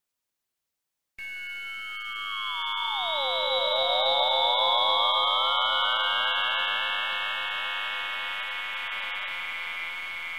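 Synthesized logo ident sound: starting about a second in, a cluster of pure electronic tones glides apart, some rising, others sinking and then climbing back, and builds to a loud sustained high chord that slowly fades a little.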